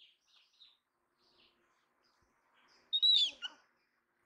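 Faint short high chirps, then about three seconds in one loud high-pitched animal call that falls in pitch.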